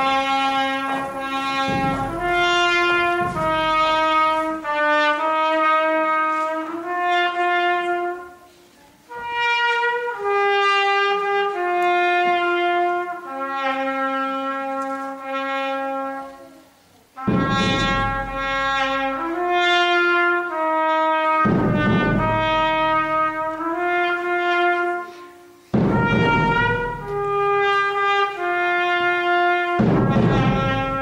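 Brass band playing a slow melody in long held notes, in phrases with short breaks between them, with low drum strokes at the start of several phrases.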